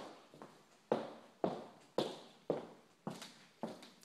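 Footsteps on a bare hard wood-look floor in an empty room: six even steps, about two a second, each a sharp knock with a short echoing tail.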